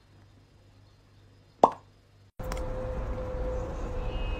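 A single sharp mouth pop about one and a half seconds in: air from puffed cheeks bursts out through pressed lips, with a quick drop in pitch. About halfway through, a steady background hiss with a faint hum takes over.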